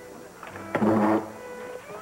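Soft dramatic background score with sustained held notes. Just under a second in, a short, louder sound with a clear pitch cuts in and fades over about half a second.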